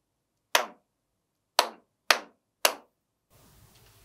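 Hand claps in a simple rhythm: one clap about half a second in, then three quicker claps about half a second apart, finishing the body-percussion pattern "tan, tan, tan-tan-tan".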